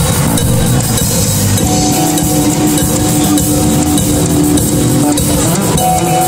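A drum kit played with a steady run of kick, snare and cymbal hits over accompanying music, which holds long sustained notes through the middle.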